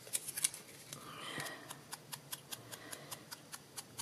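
Sponge dauber dabbing ink around the edge of a small punched cardstock piece: faint, irregular light clicks and taps, with a brief soft rubbing about a second in.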